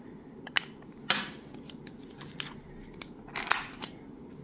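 A plastic scraper card scraped across a metal nail-stamping plate to clear off excess polish. There are two short scrapes, one just after a second in and a longer one near the end, with a few light clicks and taps between them.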